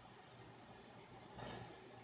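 Near silence: room tone, with a faint soft sound shortly before the end.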